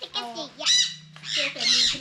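Blue-and-gold macaw squawking twice: a short harsh call, then a longer one about a second later.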